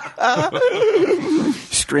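A man's voice doing a wavering, whinny-like wail that rises and falls, imitating a small child screaming in a night terror; a short laugh follows near the end.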